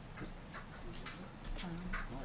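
Faint, irregular clicks and taps, a few per second, with a louder click just before the end and a brief low murmur of a voice shortly before it.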